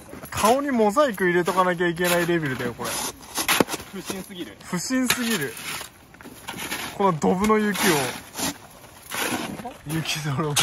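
Men's loud voices over a shovel chopping and scraping into a pile of hard, icy snow, with several sharp knocks as the blade strikes frozen chunks.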